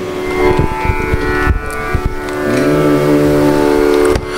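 Live Indian song accompaniment between sung lines: tabla strokes under long held melodic notes, with a lower voice-like note sliding up and held from about halfway through.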